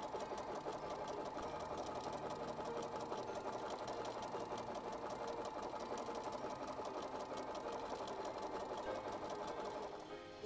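BERNINA sewing machine sewing a decorative wavy stitch at a steady speed, a fast even run of needle strokes.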